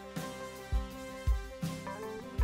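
Church band playing live: sustained chords over kick drum beats and cymbal washes, with a guitar.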